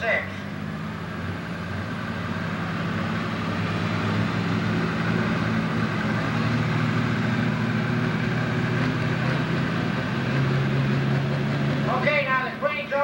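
Pro Stock pulling tractor's turbocharged diesel engine running steadily at the start line, hooked to the sled but not yet pulling. It grows gradually louder.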